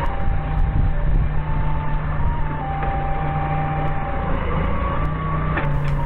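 Doosan 4.5-ton forklift's engine running steadily under load while the hydraulic mast lifts a heavy carriage, with a thin whine that steps up and down in pitch.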